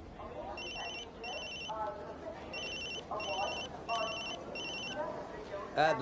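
A telephone ringing with a high, warbling double ring: three pairs of short rings.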